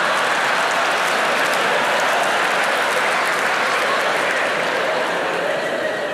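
Audience applauding steadily, a dense wash of clapping that eases slightly near the end.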